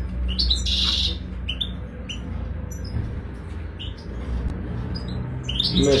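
European goldfinches chirping: a short run of high twittering calls about half a second to a second in, then scattered single chirps, over a steady low hum.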